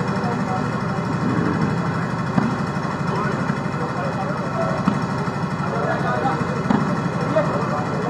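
Volleyball being struck a few times during a rally, heard as short sharp hits over a steady background of spectators' murmuring voices and a low, engine-like hum.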